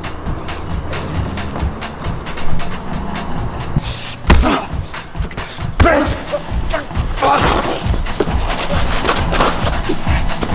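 Film score with a low sustained drone, over the thuds of a fistfight: two hard hits, about four and six seconds in, and strained grunts.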